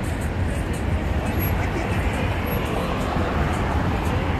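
Steady road traffic noise from cars driving along a busy multi-lane city boulevard, an even low rumble.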